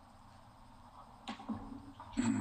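Quiet room tone, then two soft clicks close together about a second and a half in.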